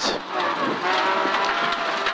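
Rally car engine heard from inside the cabin, pulling hard at a nearly steady pitch over gravel and road noise.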